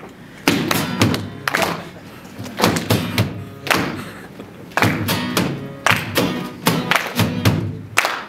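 Two acoustic guitars strummed in sharp accented chords, with hands slapping a hard-shell guitar case as a drum, in a live unplugged rock jam.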